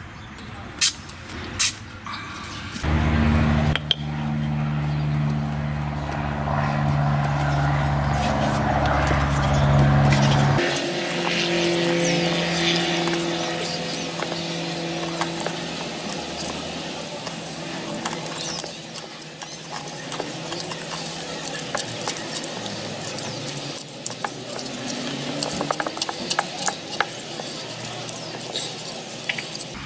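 Folding knife's steel blade tip driven into a small block of wood and levered, with sharp clicks, knocks and cracks, thickest in the last third. A steady low drone fills the first several seconds and is the loudest sound.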